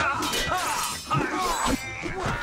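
Movie sword-fight sound effects: metal blades clashing with a ringing, clattering clang, in two bursts, at the start and again about a second in.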